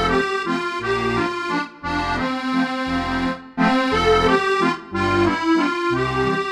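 Roland FR-4x digital V-Accordion played on its factory 'NewDANCE' set: a treble melody over a left-hand bass note about once a second with chords between. There are a few brief breaks in the phrasing.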